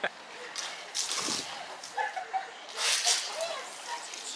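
Water blasters spraying in two short bursts of hissing spray, about a second in and about three seconds in, with faint voices in between.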